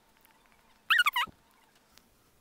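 A short, high-pitched two-part call about a second in, falling in pitch, against near silence.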